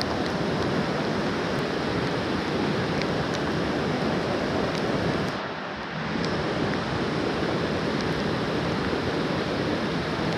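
Steady rush of a mountain trout stream's riffles mixed with heavy rain falling on the water, with scattered faint ticks. The sound dips slightly for a moment about halfway through.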